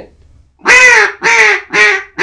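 Mallard duck call blown as a comeback call, the call used to turn ducks that are flying away: three loud, reedy notes, each shorter than the last, starting about two-thirds of a second in.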